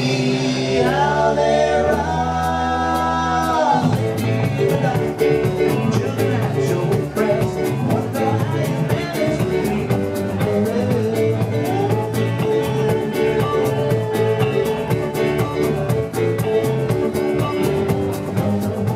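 Live rock band playing a cover song: electric guitars, bass and drum kit with singing. A few notes are held together for about three seconds near the start, then the full band plays on with a steady beat.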